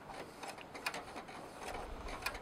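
Faint, irregular clicking of a Brother laser printer's registration rollers and their gear train being turned by hand during cleaning.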